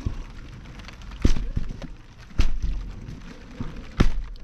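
Partly filled plastic water bottles flipped onto a trampoline mat, landing with dull thuds about a second apart and a last one near the end, over a light patter of rain.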